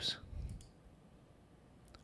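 Faint computer mouse clicks: one about half a second in and another just before the end, with little else between them.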